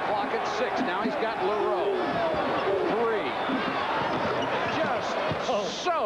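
Arena crowd voices and noise during live college basketball play, with a basketball bouncing on the hardwood court, heard through an old TV broadcast recording.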